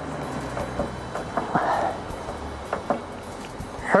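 A cloth rag rubbing the painted metal of a car's trunk lid to dry it, with a few light knocks, over background music.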